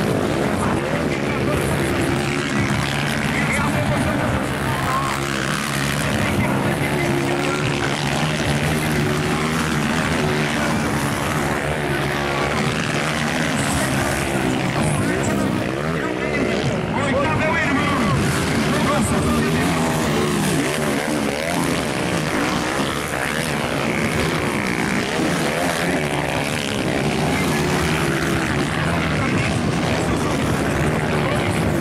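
Several motocross bikes racing around the track, their engines revving up and down over and across one another.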